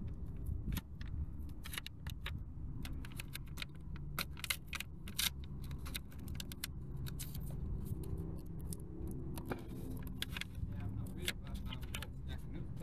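Blue painter's tape crackling and clicking in quick irregular snaps as it is folded and pressed down around a steel wheel rim, over a steady low rumble like a vehicle engine running nearby.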